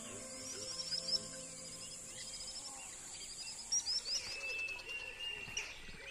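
Wild birds chirping in quick repeated runs of short high notes, with one held note near the end, over a steady high insect drone. Soft music tones fade out in the first two seconds.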